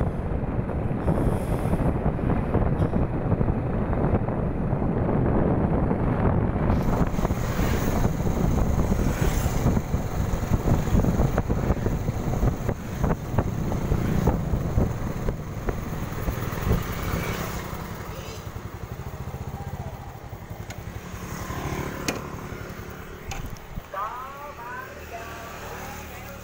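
A Yamaha motorbike being ridden along a road, its engine running under a heavy rumble of wind on the microphone. Over the last several seconds it gets quieter as the bike slows to a stop.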